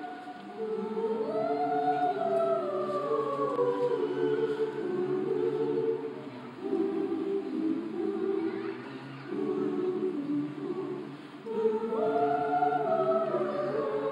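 An a cappella choir singing held chords in slow phrases, with short breaks between them. A higher voice line rises over the chords about a second in and again near the end.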